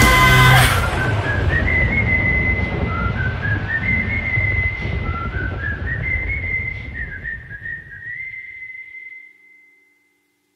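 A full rock band track stops abruptly just under a second in, leaving a lone whistled melody, sped up and high, over a low rumble. The whistle climbs in short stepwise phrases three times and ends on a long held note that fades out near the end.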